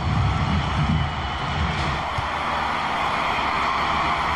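Football stadium crowd roaring steadily, growing a little louder about a second in as an attack bears down on goal.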